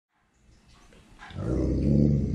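A dog making a drawn-out, low growling 'talking' vocalization that swells up about a second and a half in and is still sounding at the end.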